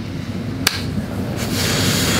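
Rustling and shuffling from a person shifting back in a seat close to the microphone, over a low rumble. One sharp click comes about two-thirds of a second in, and a louder rustle builds near the end.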